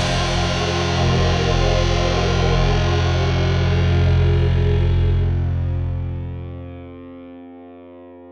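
Closing chord of a rock song: a distorted electric guitar chord left ringing after the band stops, dying away from about five seconds in, its low notes cutting off near the end.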